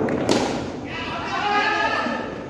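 A single sharp knock from a cricket ball in play at the nets, followed by men's voices calling out.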